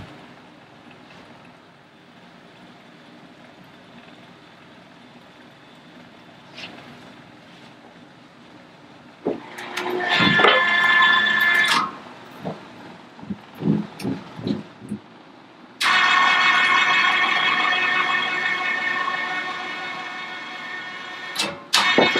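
Electric chain hoist motor whining in two runs: a short one about ten seconds in, then, after a few knocks and chain clinks, a longer one from about sixteen seconds that slowly fades. Before that there is only low room tone.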